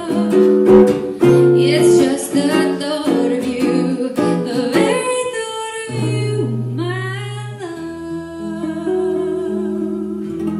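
Acoustic guitar accompanying a woman singing, in a live acoustic blues performance; the sound thins out and gets quieter over the last few seconds as the song winds down.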